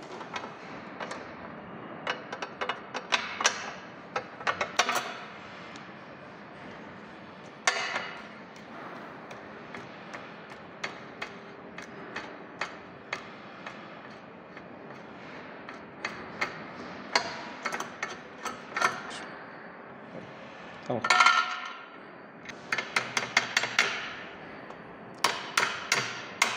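Pliers and the metal parts of a tractor seat's weight-adjustment mechanism clicking and clinking as its pin and knob are worked loose. The sound comes in clusters of sharp clicks with quieter stretches between, and the loudest, ringing clatter comes about three-quarters of the way through.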